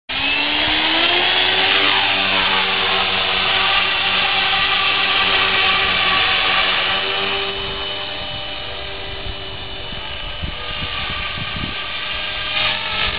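Radio-controlled model helicopter spooling up with a rising whine, then lifting off and flying with a steady rotor and motor whine that grows fainter from about seven seconds in as it climbs away.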